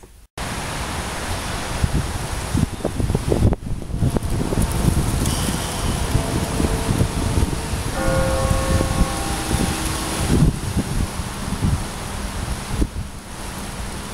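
Wind buffeting the microphone outdoors: a loud, gusting rumble and hiss. It is joined for about a second and a half, some eight seconds in, by a held pitched tone, perhaps a horn or a bell.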